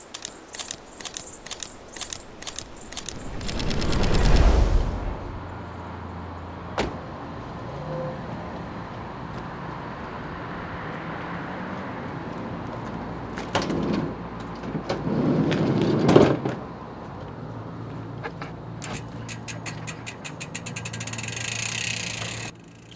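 A van's engine running steadily, with a loud door sound, typical of a van's sliding door, about a second long near two-thirds of the way through. Earlier there is a run of sharp clicks and a swelling rush of noise about four seconds in.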